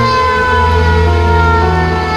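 An emergency siren with a slowly falling pitch, over background music with a steady bass.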